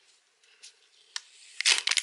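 Paper packaging on a small charger box being pulled and torn open: a sharp click a little after a second in, then a short, loud crinkling rip near the end.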